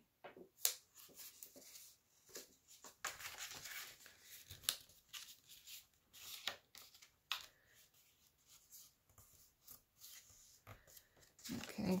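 Sheets of scrapbook paper being handled and folded by hand: soft, irregular rustling and crinkling with a few sharp crackles as the paper is creased.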